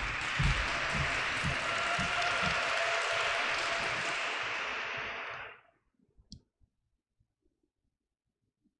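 Applause, steady clapping that fades out about five and a half seconds in, with a few low thuds in the first couple of seconds.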